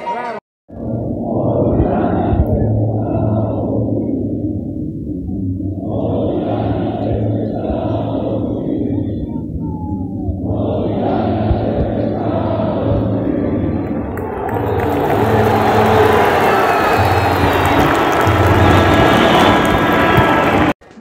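A large stadium crowd singing and chanting together, the sound swelling and easing in long phrases. About fifteen seconds in the crowd noise turns louder and brighter.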